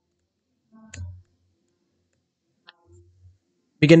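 Two faint single clicks, one about a second in and a smaller one later, typical of keys on a computer keyboard, otherwise silent. A man's voice starts at the very end.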